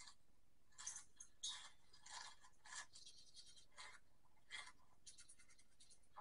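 Faint crunching and chewing of raw peppers being bitten into: about a dozen short, crisp crunches at irregular intervals, heard through a screen's speaker.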